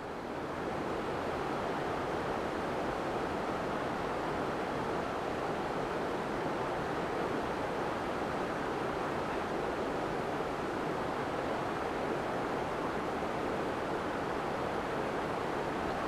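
Fast-flowing river running with a steady, unbroken rush of water.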